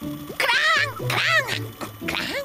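A cartoon baby dinosaur's squeaky, high-pitched wordless voice: two calls that rise and fall in pitch. Background music with a pulsing bass runs under it.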